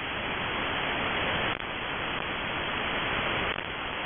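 Steady shortwave radio static: the hiss of a receiver tuned to 5473 kHz upper sideband, heard between the spoken groups of a number-station voice message. The level dips briefly about a second and a half in.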